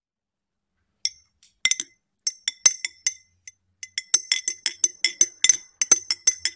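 Metal teaspoon clinking against the inside of a ribbed tea glass as it stirs the tea, each clink ringing briefly. The clinks start about a second in, come scattered at first, then speed up to a steady run of about five a second near the end.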